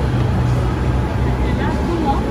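Steady low hum with a noisy background and faint, indistinct voices: indoor shop ambience.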